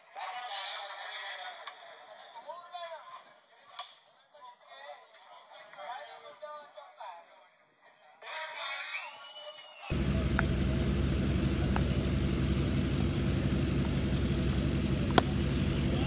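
Tennis-ball cricket match sounds: thin-sounding shouts and voices of players and onlookers for about ten seconds. An abrupt cut then brings a loud steady low hum and noise, with a single sharp crack of the bat striking the ball about a second before the end.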